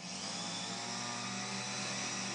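A steady mechanical hum and drone, even throughout, like a running motor or fan.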